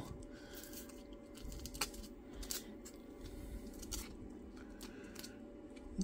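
Faint handling noises: a few light clicks and rustles as fingers work a jute-string handle on a small foam miniature crate, over a steady faint room hum.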